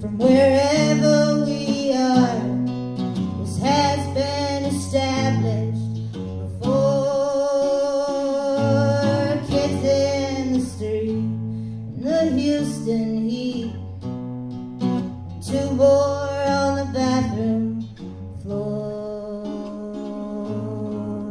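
A woman singing a slow folk song to acoustic guitar, in sung phrases of a few seconds with a long held note about seven seconds in.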